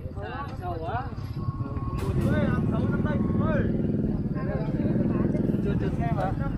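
A motorbike engine running close by, growing louder about two seconds in and staying steady, under people talking.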